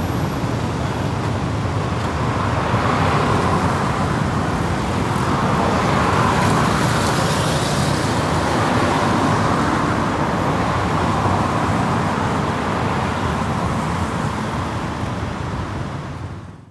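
Road traffic noise at a busy city junction: a steady mix of car engines and tyre noise, swelling louder about six to eight seconds in as vehicles pass close.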